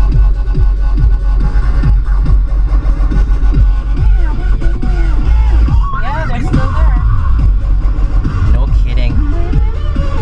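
Electronic dance-style music with a strong steady beat and a voice over it.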